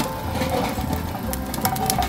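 Chestnut roasting machine running, its perforated drum turning over gas flames with a steady mechanical hum and a few faint clicks.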